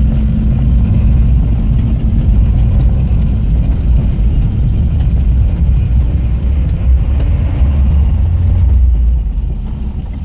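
Low, steady engine and road rumble of the vehicle carrying the camera as it drives along. It eases off near the end as the vehicle slows almost to a stop.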